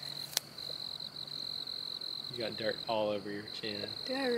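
A steady, high-pitched insect trill, with a woman's voice speaking briefly in the second half.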